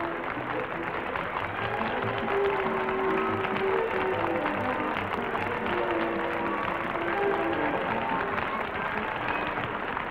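Closing theme music of a TV game show, a melody of held notes, playing over steady studio-audience applause.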